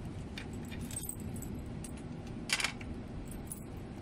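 Tarot cards being handled and picked up from a glass tabletop: a few short rustles and light clicks, the sharpest about two and a half seconds in, over a low steady background hum.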